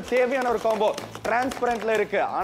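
Speech: a person talking continuously, with no other sound standing out.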